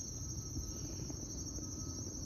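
Steady high-pitched chirring of insects, with a low rumble underneath.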